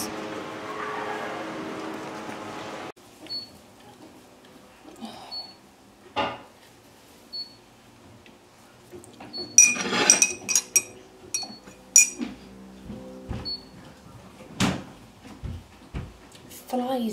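About three seconds of steady shop background sound, then a cut to a kitchen: china mugs and cutlery clinking and knocking on a worktop in short clusters, with a faint short high beep about every two seconds.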